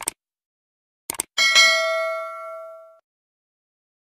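Subscribe-button animation sound effects: a mouse click, a quick double click about a second in, then a bright notification-bell ding that rings on and fades out over about a second and a half.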